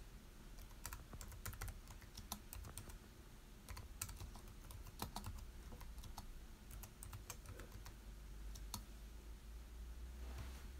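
Faint typing on a computer keyboard: irregular runs of quick key clicks.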